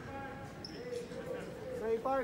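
Faint, distant speech in a large basketball arena, a man talking with the hall's echo around it.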